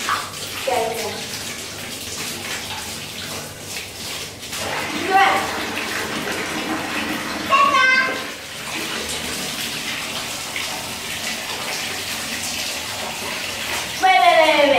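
Water running from a wall tap and splashing in a tiled shower, a steady rush throughout. A child's voice cuts in briefly three times.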